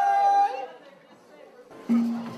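Haudenosaunee social-dance singers hold the final note of a Women's Shuffle Dance song, cutting off about half a second in. A short lull of crowd chatter follows, and near the end a single voice starts a new low held note.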